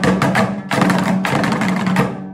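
Dambura, the Afghan two-string long-necked lute, strummed hard in a fast, even, percussive rhythm over a steady low drone. The strumming stops right at the end and the last stroke rings out.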